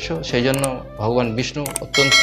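A man's voice, overlaid with the sharp click sound effects of an animated subscribe button: one about half a second in and a quick double click near the end.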